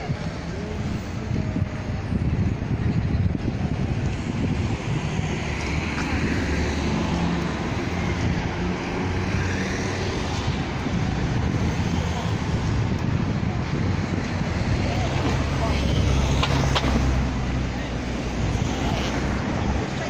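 Busy night-time street ambience: road traffic and people talking, over a steady low rumble.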